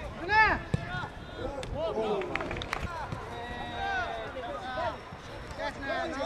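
Players shouting calls to each other on a football pitch: short rising-and-falling yells from several voices, the loudest about half a second in, with a few sharp knocks mixed in.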